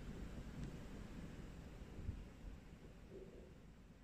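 Quiet room tone: a faint low rumble that fades away, with one soft knock about two seconds in.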